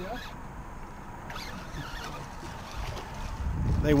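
Steady wind and water noise aboard a small open boat, with low wind buffeting on the microphone building near the end.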